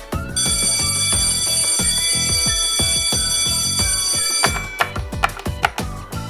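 An electric school bell rings steadily for about four seconds, starting just after the start. Background music with a light, regular beat runs underneath.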